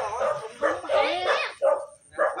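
A dog yelping and whining in several short cries in quick succession.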